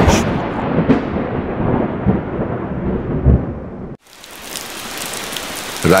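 A thunder sound effect: a loud clap of thunder that rumbles and fades away. About four seconds in it cuts off abruptly and steady rain takes over.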